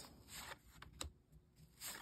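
Near silence with a faint rustle and a few soft ticks of tarot cards being slid off one pile and placed on another.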